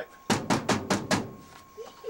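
Five quick knocks on the closed metal door of a clothes dryer, about five in a second.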